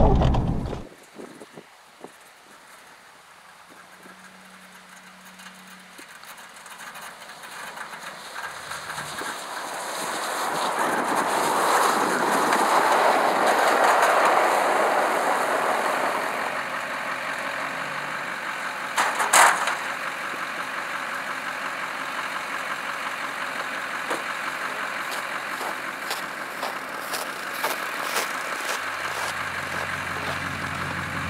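Diesel pickup with a V-plow heard working: the Duramax diesel is loud inside the cab for the first second, then cuts off abruptly. After that, heard from outside, a rushing noise from the truck swells over several seconds and eases off, with one sharp click about two-thirds of the way through and a steady low engine hum near the end.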